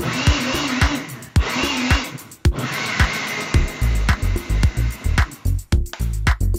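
Countertop blender running in three short bursts of about a second each, its motor whine bending in pitch, as it blends a banana-and-apple smoothie; the bursts end about three and a half seconds in. Background music with a steady beat plays throughout.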